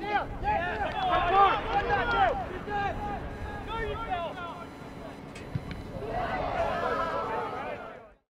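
Several voices shouting across a soccer field during play, overlapping calls heaviest in the first couple of seconds and again near the end, over open-air field noise.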